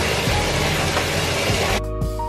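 Steady hiss of water running from a bathtub tap, under background music; the hiss cuts off abruptly near the end, leaving the music.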